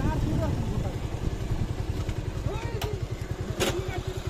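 Motorcycle engine running at low road speed, with a fast, even exhaust beat. Two short sharp clicks come about three seconds in.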